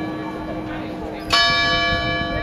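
Clock bell striking the hour: the ring of one stroke dies away, then a fresh stroke comes about a second and a half in, its many ringing overtones hanging on.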